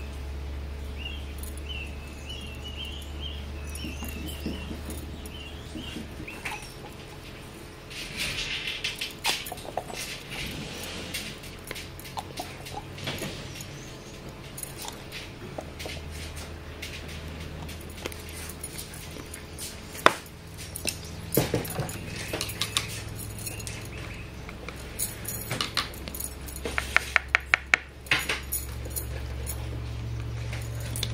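Scattered clicks and light metallic clinks over a low steady hum, with one sharp click about two-thirds of the way through and a quick run of about six clicks near the end. A faint, high, wavering whine is heard in the first few seconds.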